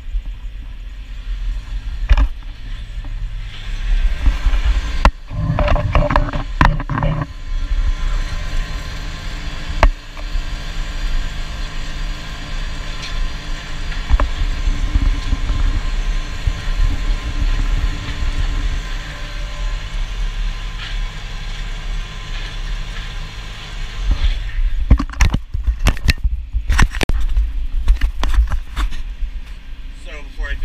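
Tractor engine running steadily under heavy load while pulling a ripper through hard clay, heard from outside the cab. Clusters of knocks and clatter come about five to seven seconds in and again near the end, as the camera on its stick is moved out of and back into the cab's back window.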